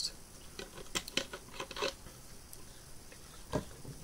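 Handling noises: scattered soft rustles and small clicks as food packaging and items are picked up and moved, with one sharper click about three and a half seconds in.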